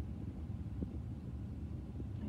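Low steady background rumble, with a faint short tick a little under a second in.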